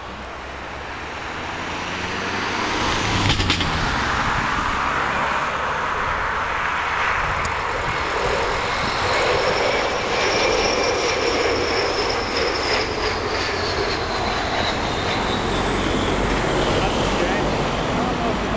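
Turbofan engines of a British Airways CityFlyer Embraer regional jet on landing approach, passing low. The sound grows louder over the first few seconds, then holds loud with a high whine that falls in pitch as the jet goes by.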